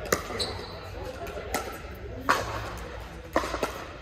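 Doubles pickleball rally in a large indoor hall: paddles striking the hollow plastic ball, about five sharp pops at uneven intervals, each with a short echo.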